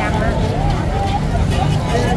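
Street chatter from people nearby, over a steady low rumble of passing traffic.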